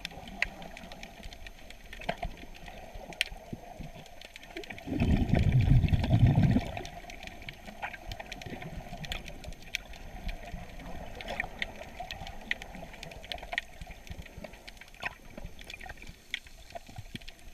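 Underwater ambience picked up by a submerged camera in shallow sea water: a steady watery hiss with scattered sharp clicks. About five seconds in, a loud low rumble lasts about a second and a half.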